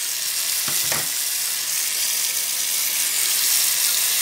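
Tap water running in a steady hiss over a laptop heatsink held under the stream in a stainless steel sink, flushing wet dust out of the fins. A couple of light knocks come about a second in.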